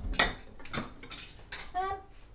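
Ceramic bowls clinking against each other and knocking onto a cupboard shelf as crockery from the dishwasher is put away. There are a few sharp clinks, the loudest just after the start.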